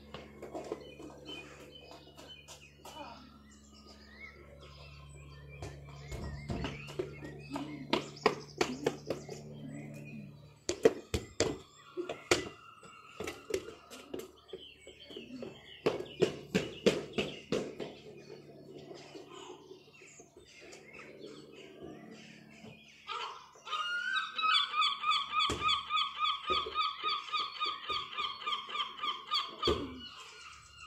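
A football being kicked and bounced on a tarmac lane, with running footsteps: a quick run of sharp thumps and slaps through the middle. A low steady hum stops about a third of the way in, and near the end a high pulsing call repeats about three times a second.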